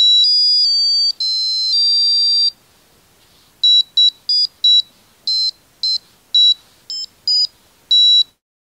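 Piezo speaker on a touch-key piano necktie beeping out high-pitched electronic notes as its keys are touched. First comes a run of about five joined notes changing pitch, then, after a short pause, about ten short separate notes of differing pitch.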